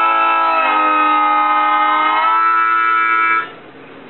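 TurboSlide harmonica, a Seydel Silver diatonic with stainless steel reeds, playing sustained chords that change twice and stop about three and a half seconds in.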